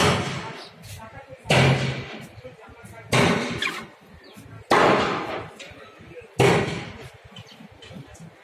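A loud bang repeated five times at an even pace, about a second and a half apart, each with a rushing tail that fades over about a second.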